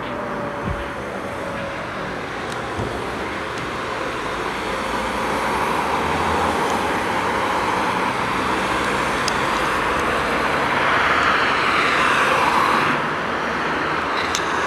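Road traffic at a street crossing: steady tyre and engine noise of passing cars, swelling as a car goes by in the second half.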